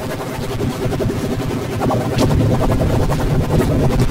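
Jingle music from a soft-drink TV commercial, electronically distorted by audio effects into a dense, harsh wash of sound. It grows louder about two seconds in.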